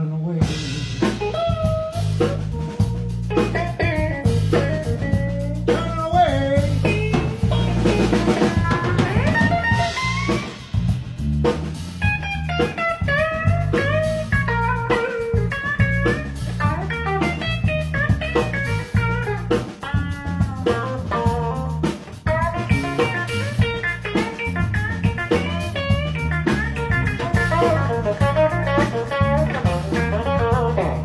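A live blues trio, electric guitar, electric bass and drum kit, playing a song together. The bass line holds steady underneath, and many bending melodic lines sit above it over a continuous drum beat.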